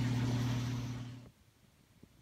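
A laundry machine running with a steady low hum. It fades away a little over a second in, leaving near silence.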